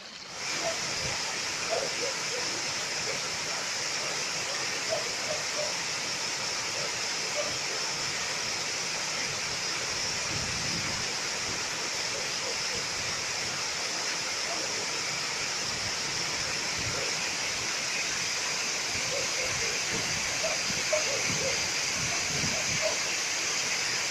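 A small village stream pouring over a low concrete weir: a steady, loud rush of falling water, suddenly louder just after the start.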